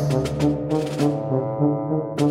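Background music with brass: a low sustained note under a melody of short held notes, with light percussion ticks.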